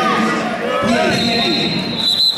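Several people shouting at once in a large echoing gym. About halfway through, a high steady tone joins the voices and holds.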